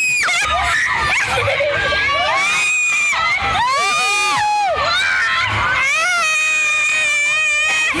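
Several women on an amusement park ride screaming and shrieking, with laughter mixed in: high-pitched, overlapping screams that rise and fall.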